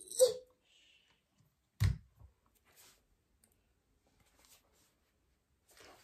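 A few short plastic clicks and a knock as a USB cable's plug is pushed into a wall-mounted multi-port charger, with quiet between.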